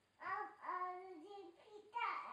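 A toddler singing in a high voice without clear words, holding a few steady notes.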